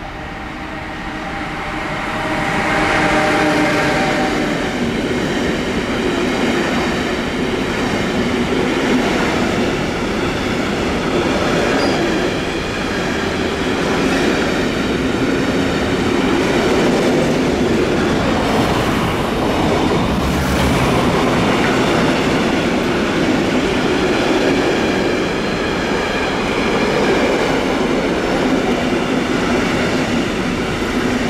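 Electric freight train passing close by: a Siemens Vectron (class 193) locomotive followed by a long string of intermodal wagons carrying semi-trailers and containers. Its noise builds over the first few seconds, with a few steady tones as the locomotive goes by, then settles into a steady rolling rush of wheels on rails from the wagons.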